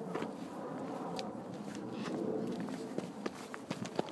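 Footsteps on rock as hikers walk down a trail: irregular steps with a few sharp clicks of shoes on stone.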